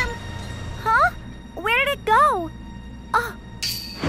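A cartoon character's voice making four short wordless questioning sounds, each rising then falling in pitch, over background music. A brief hiss comes near the end.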